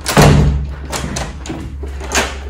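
A wooden door thudding shut, followed by several light clicks as its brass lever handle and lock are worked.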